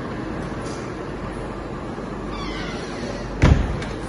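An office door being shut. A short falling squeak comes about two and a half seconds in, then a loud thump as the door closes, over a steady room hum.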